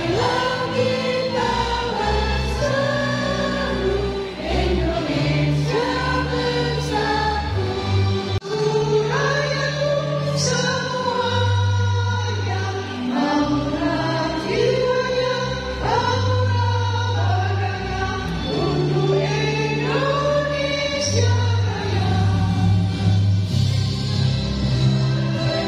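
A group of women singing together to an instrumental accompaniment with long held bass notes, with a brief break about eight seconds in.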